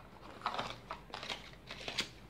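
Paper and thin cardboard rustling and scraping as a small white smart-watch box and its paper insert are handled and unpacked, in a series of short scratchy strokes.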